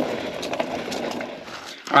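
Mountain bike rolling down a dry, leaf-covered dirt trail: a steady rush of tyre and trail noise with small clicks and rattles from the bike, dropping away shortly before the end.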